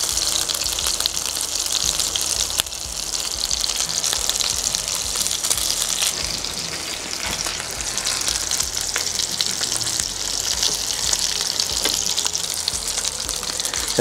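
Panko-crusted lamb chops sizzling steadily in hot oil in a nonstick skillet, with a few small clicks as the chops are turned.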